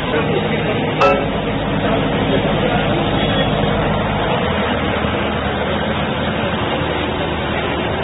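Steady running hum of a parked bus's idling engine, with a short sharp click about a second in.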